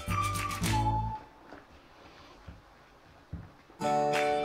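Background music: a whistled melody stepping down in pitch over plucked acoustic guitar. It breaks off about a second in and comes back just before the end. In the gap there is only near quiet and a couple of faint ticks.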